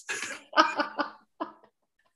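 A person laughing in a few short bursts that die away.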